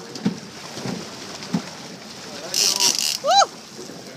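Water splashing and churning at the boat's side as a hooked fish thrashes at the surface, with a louder burst of splashing about two and a half seconds in. A short rising-and-falling vocal whoop follows just after it.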